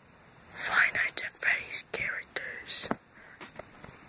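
A person whispering, from about half a second in until about three seconds in, followed by a couple of faint clicks.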